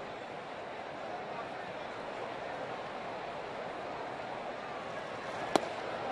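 Ballpark crowd murmuring steadily, then a single sharp pop near the end as a 93 mph inside fastball smacks into the catcher's mitt for a called strike.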